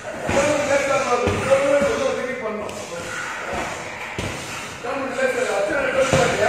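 Voices in a reverberant hall, broken by several heavy thuds, roughly one a second.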